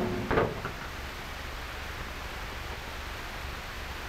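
Steady hiss with a low hum, the background noise of an old film soundtrack, after a brief voice sound in the first half second.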